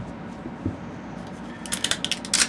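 Small, sharp crackling clicks of a 3D-printed ABS part being handled and its raft or brim starting to be picked and peeled off, coming in a quick cluster near the end after a quiet stretch with one soft knock.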